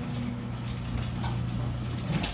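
Electric garage door opener running as the sectional garage door moves, a steady low hum with rattling; it stops near the end.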